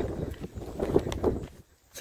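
Footsteps on a sandy dirt track, with wind rumbling on the microphone.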